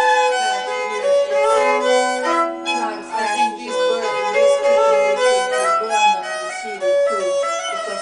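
Hardanger fiddle played solo: a bowed Norwegian folk tune, with long-held lower drone notes sounding under the moving melody.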